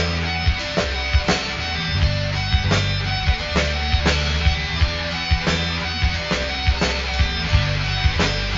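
Instrumental passage of a band's song without singing: plucked guitar over a held bass line, with regular drum hits.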